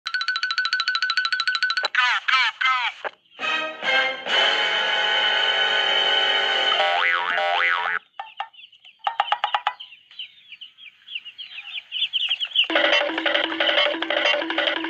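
A string of cartoon sound effects: a buzzing tone, springy boings, a long held chord with wobbling pitch glides and a chirping trill. Upbeat background music comes in about a second before the end.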